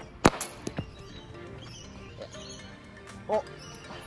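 A cricket bat striking the ball once, a sharp crack about a quarter of a second in, a shot that goes for four runs, over background music.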